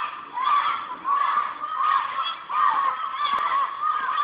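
A group of children shouting over and over, many short high yells overlapping, about two a second.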